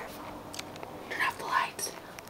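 Hushed whispering for under a second, starting about a second in, with a few faint clicks around it.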